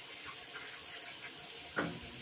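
Water running steadily into a Whirlpool WTW4816 top-load washer's tub during the cycle's sensing stage. A short hummed "mm" from a person comes near the end.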